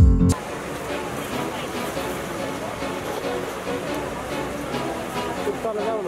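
A logo jingle's last deep musical hit ends about a third of a second in. After it comes a steady, dense mix of voices and background music.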